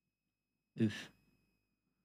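A short sigh about a second in: a brief voiced breath out that trails off into breathing.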